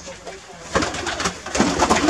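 Domestic pigeons cooing in a loft, joined about three-quarters of a second in by a flurry of wingbeats as birds are startled into flight.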